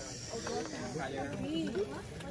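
Indistinct conversation among several people in the background, with a soft hiss during the first half second.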